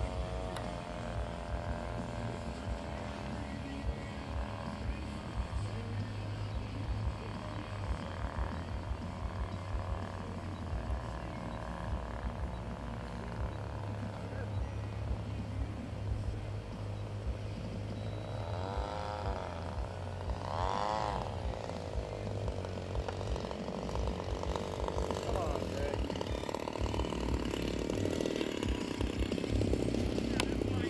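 Small two-cylinder gasoline engine of a radio-control model plane running in flight, faint and steady at first. Its pitch bends up and down twice as the plane passes, and it grows louder near the end as the plane comes in close to land.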